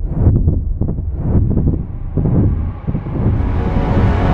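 A deep, uneven rumble with rough surges, with a hissing swell rising in pitch and building over the last second.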